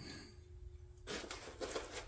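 Faint handling noise of a laser engraver's aluminium gantry being taken out of a foam packing tray: irregular rubbing and light knocks of foam and metal, starting about a second in.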